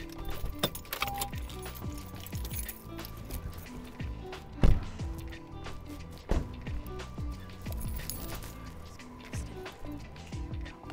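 Background music with held notes and a bass line, with one sharp, loud thump about halfway through and a smaller one about a second and a half later.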